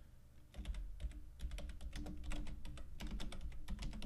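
Typing on a computer keyboard: a quick, uneven run of keystrokes that starts about half a second in.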